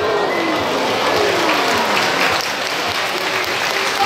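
Audience applauding, with a low tone gliding downward underneath in the first half.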